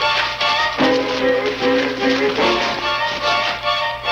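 Suspense film score: held notes over a fast, repeated pulse. It moves to a lower chord just under a second in.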